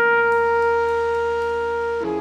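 Jazz: a single long, steady horn note held without a break, over a low sustained bass tone.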